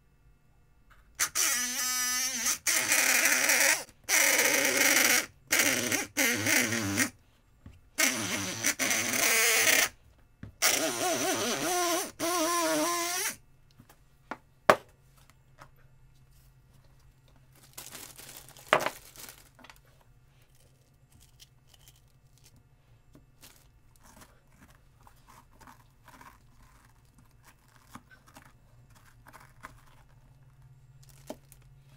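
Wendt electric lockpick gun running in about seven bursts of one to two seconds, its buzz wavering in pitch as the vibrating pick is driven into the pumpkin. In the second half there is only faint scraping and handling of the pumpkin, with two sharp knocks.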